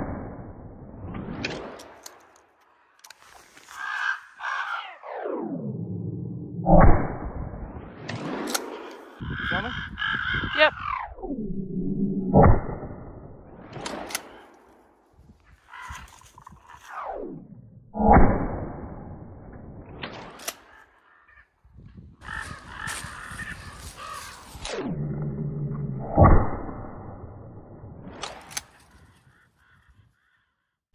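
Several 12-gauge shotgun shots from a pump-action Remington 870 Tac-14, a few seconds apart, each with a long echoing tail, fired at crows and ravens. Crows cawing.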